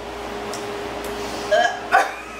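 A woman's two short, sharp vocal noises close together near the end, made with her hand over her mouth as she reacts to a foul-tasting Bean Boozled jelly bean. A faint steady hum runs underneath.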